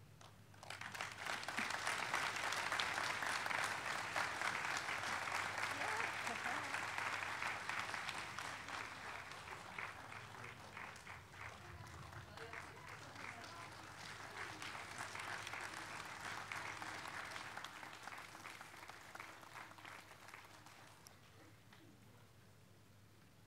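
Audience applause that starts about a second in, holds strong for several seconds, then gradually dies away near the end.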